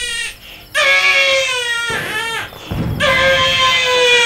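Newborn baby crying in long, high-pitched wails that fall slightly in pitch. There are three cries in a row, with short breaks for breath between them.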